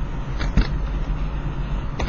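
Steady low rumble of background noise on the recording, with a couple of faint clicks about half a second in.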